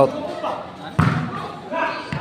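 A single sharp hit of the game ball about a second in, with faint voices around it.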